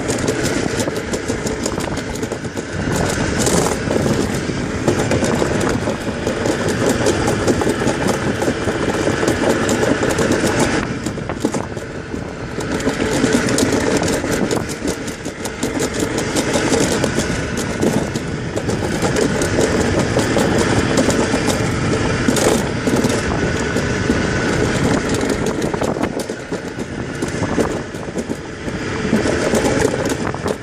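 Summer toboggan sled's wheels rolling fast down a stainless steel trough track: a loud, steady rumble that dips briefly twice.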